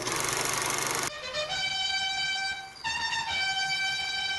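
About a second of loud hiss that cuts off abruptly, then a long held horn-like note. Near three seconds the note steps up in pitch for about half a second, then drops back.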